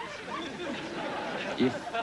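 Studio audience laughing, a dense mass of many voices that carries on for about a second and a half before a man's line of dialogue resumes.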